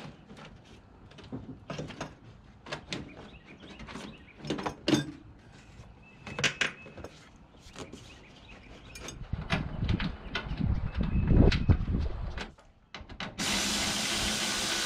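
Ribbed rubber air-intake hose being pushed and worked back onto the engine by hand: scattered clicks, knocks and rubbing of rubber on plastic, with a louder stretch of low rumbling handling noise late on. Just before the end a steady mechanical drone cuts in abruptly.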